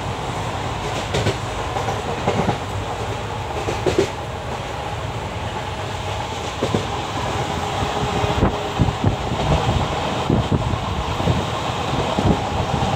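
A passenger train running, heard from inside the coach: a steady rumble with scattered clacks and knocks.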